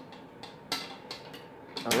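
A few light clicks and taps as a small bead loom, a wire frame with wooden rollers, is handled over a glass tabletop. The loudest click comes about two-thirds of a second in.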